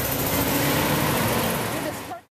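A minivan driving slowly past at low speed, its engine and tyres running steadily, with road traffic noise and faint voices.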